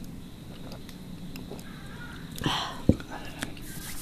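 Cola being sipped and swallowed from glasses, with a breathy exhale about two and a half seconds in and a single sharp knock just after it.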